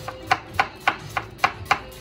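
Chef's knife slicing a red onion on a cutting board: even, quick strokes, about three or four a second, each ending in a tap of the blade on the board.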